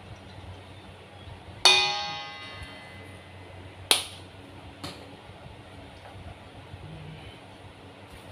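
A stainless steel mixing bowl is struck sharply and rings with a bell-like tone that fades over about a second. Two shorter metallic clinks follow, about two and three seconds later.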